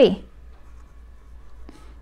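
Pen writing on lined notebook paper: faint scratching strokes as numbers and letters are written out.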